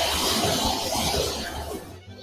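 Water sizzling on caraway seeds in a hot pan, a steady hiss that fades away near the end.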